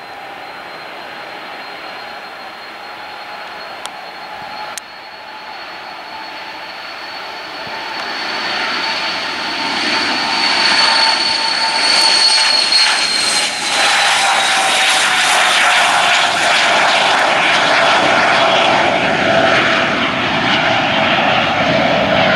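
Dornier 328JET's twin Pratt & Whitney Canada PW306B turbofans at take-off power during the take-off roll: a high engine whine over a rushing roar that grows much louder as the jet approaches, peaks as it passes, and drops in pitch as it goes by and lifts off.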